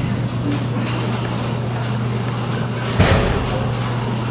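Steady low electrical hum over the background noise of a large hall, with a single short thump about three seconds in.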